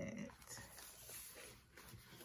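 Faint rustling and handling of a spiral-bound paper planner as it is closed and lifted off a desk.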